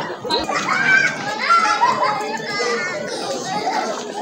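Children's high-pitched voices calling and chattering over a crowd of people talking.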